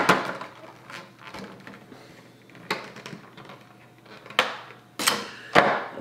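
Plastic wrapping of a Pokémon promo card crinkling and tearing as it is opened by hand: a handful of sharp crackles, several close together near the end.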